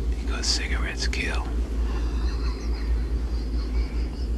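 Film soundtrack: a man's voice says a few words in the first second and a half, over a steady low rumble that runs underneath.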